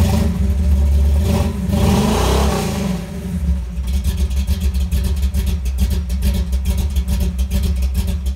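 Car engine revving loudly, then settling into a fast, even pulsing run about four seconds in.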